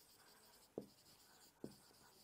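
Faint marker-pen strokes on a whiteboard as a heading is written, with two light ticks of the marker tip on the board, one about three-quarters of a second in and one near the end.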